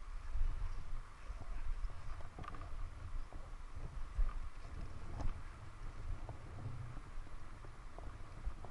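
Wind buffeting the microphone over the crunch of ski-boot steps in packed snow while climbing a bootpack, with scattered light clicks and knocks from the ski poles.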